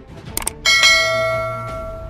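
A quick double mouse-click sound effect, then a bright bell ding that rings out and fades slowly over more than a second. It is the notification-bell chime of a subscribe animation, heard over soft background music.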